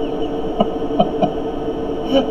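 A man chuckling quietly under his breath, about three short puffs in the middle, over a steady electrical hum.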